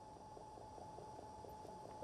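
Near silence: room tone with a faint steady high tone.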